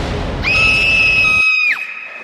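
A girl's high, steady scream held for about a second and then dropping in pitch as it ends, the scene of her waking with a start. Loud soundtrack music plays under the start of it and cuts off suddenly partway through.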